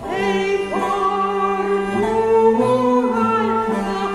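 A woman's solo voice singing a medieval cantiga over bowed medieval fiddles, with a steady low drone held beneath. A new sung phrase begins right at the start, after a brief dip in the music.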